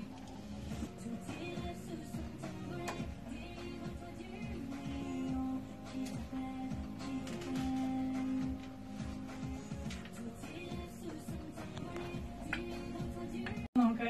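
An excerpt of a recorded song playing, with held melodic notes. It cuts off abruptly just before the end.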